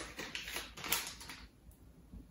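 A laptop RAM module being handled in the fingers: a run of light clicks and taps for about the first second and a half, then quiet.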